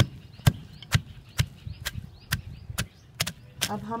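Wooden pestle pounding chopped spring onions with salt and chilli powder in a clay mortar, a steady rhythm of dull strikes at about two a second.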